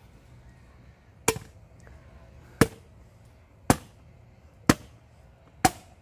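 Machete chopping into a green coconut: five sharp strikes about a second apart.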